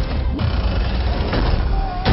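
Action-film sound mix: music over a dense, heavy low rumble of battle effects with scattered sharp hits, and a short held tone near the end.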